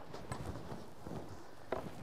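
Faint scuffs and light knocks of skis and ski poles shifting on packed snow after the skier has come to a stop.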